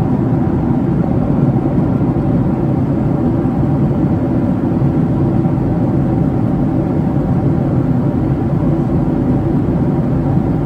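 Steady cabin noise of a Boeing 757-300 in cruise, heard inside the cabin at a window seat: a constant low rush of airflow and engine noise with a faint hum above it.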